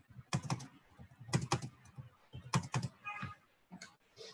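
Computer keyboard typing: short runs of three or four keystrokes about once a second, as lines of text are indented.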